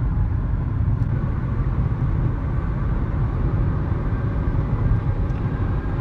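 Steady low road and engine noise inside the cabin of a 2012 Nissan Sentra 2.0 cruising at about 60 mph.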